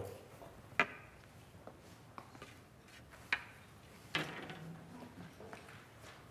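Quiet lecture-hall room tone broken by a few faint, sharp clicks and knocks, the clearest about a second in and about halfway through.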